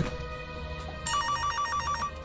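A phone ringtone: a rapid electronic trill flipping between two pitches, starting about a second in, over soft background music.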